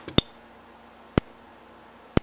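An EST Genesis G1R-HOV30 horn strobe's strobe firing, with two sharp clicks about a second apart over a faint steady high-pitched tone. The horn gives no sound because its sounder has failed.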